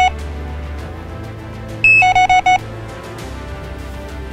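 Fox Mini Micron X carp bite alarm beeping as its volume setting is changed: one short beep at the start, then about halfway through a beep followed by four quick beeps. Background music plays throughout.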